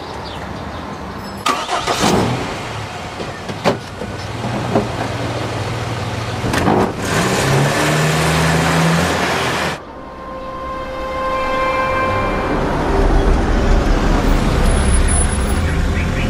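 Open-top jeep driving along a street: engine and road noise with a few sharp knocks in the first seconds. The sound cuts off abruptly near ten seconds in, and a steadier, lower sound with a few held tones takes over.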